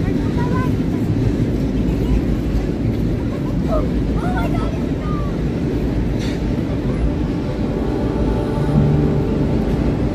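Steady low rumble of wind buffeting the microphone while walking outdoors, with faint voices of passers-by. Music comes in near the end.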